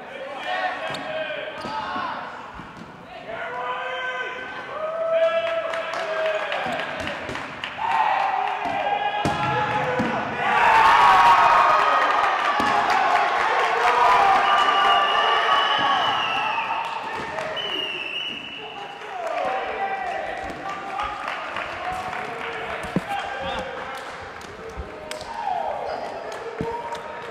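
Dodgeball players shouting and calling out in a large gym, with rubber dodgeballs thudding and bouncing on the hardwood floor. The voices swell to their loudest, with high-pitched yells, about halfway through.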